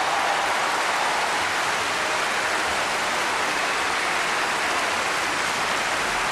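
Concert audience applauding, a dense, steady clapping with no music under it.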